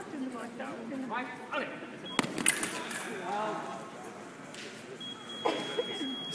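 Foil blades clicking together a few times in a quick parry exchange. About a second before the end, the electric scoring apparatus sounds a steady high tone, signalling that a touch has registered.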